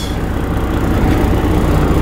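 Semi-truck diesel engine running steadily at low revs, a loud low rumble heard from inside the cab.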